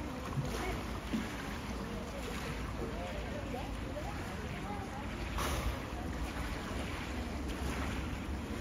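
Wind on the microphone over the moving water of a hippo pool where hippos are swimming and submerging, with faint voices in the background and a brief rush of noise about five seconds in.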